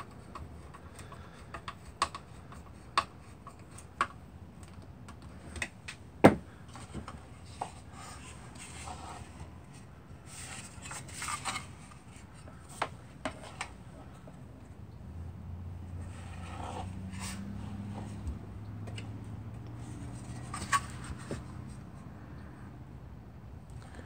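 Handling noises from a space heater's metal housing and parts: scattered sharp clicks and taps, with one louder knock about six seconds in. Brief scraping follows, then a faint low hum in the second half.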